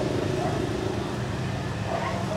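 Road traffic: a car going by with a steady low engine hum and road noise.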